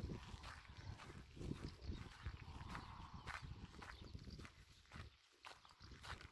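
Faint, irregular footsteps on a dry dirt track.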